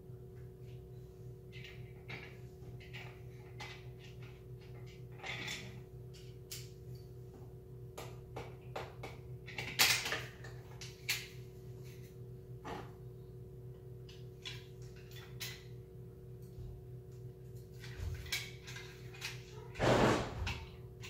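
Scattered small clicks and knocks of a screwdriver and small metal and plastic parts being handled during assembly, with a louder knock about ten seconds in and a few more near the end, over a steady low hum.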